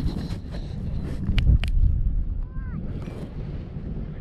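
Wind buffeting a helmet- or harness-mounted action camera's microphone, a low rumbling rush, louder about a second in, with scattered clicks and rustles from gloves and gear handled right next to it.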